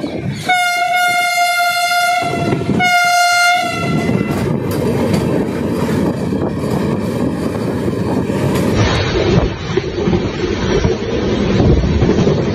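A train horn sounds twice, a long blast and then a short one, followed by the steady rumble and rattle of trains running at speed on the track.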